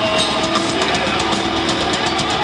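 A heavy metal band playing loud and live: electric guitars and bass over drums.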